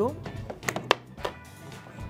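Three light clicks and taps about a second in, from a metal palette knife on an aluminium tart tin as sweet pastry dough is pressed in and trimmed, over soft background music.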